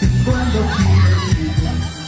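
Live band playing an instrumental passage with a steady bass line and cymbal strokes about four times a second, while the audience shouts and cheers over the music.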